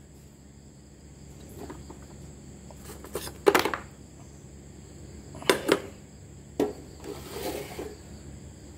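A stainless steel saucepan being lifted off an induction cooktop and set back down, making a few sharp metallic knocks, the loudest about three and a half seconds in.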